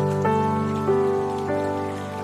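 Calm background music of sustained, held chords that shift to new notes three times, over a faint patter like rain.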